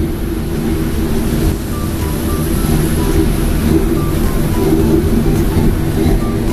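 Steady rumble and hum of a moving cable-car cabin, with music over it: a line of short, high notes.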